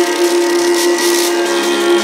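Drum and bass mix in a breakdown: a sustained synth chord held steady over a hiss, with no kick drum or bass underneath.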